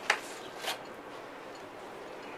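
Filleting knife sliding through a snapper fillet against its skin on a wooden board, giving two short scraping sounds just over half a second apart.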